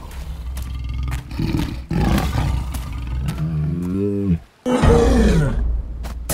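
Growling of a large cartoon Tyrannosaurus-like dinosaur over a low steady rumble. A long growl rises and wavers in pitch for about three seconds, breaks off briefly, and then a louder roar falls in pitch near the end.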